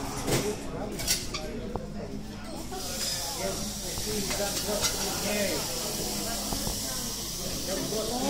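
A steady hiss of flame starts about three seconds in as the cocktail is set alight and burns, under faint chatter of onlookers.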